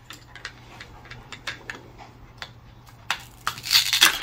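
Plastic toy kitchen pieces being handled: a scattered series of light clicks and taps, growing denser near the end.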